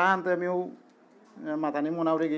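A man speaking into a phone microphone, breaking off briefly a little under a second in and then carrying on.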